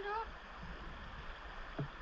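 A short, high, rising call from a child's voice at the very start, then a faint steady hiss of outdoor ambience with the river's flow.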